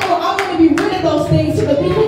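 Steady rhythmic hand clapping, about three claps a second, over a voice.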